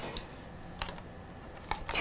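Light taps and clicks of tarot cards being laid on a wooden tabletop and handled from the deck: one tap at the start, another a little before a second in, and a few quick clicks near the end.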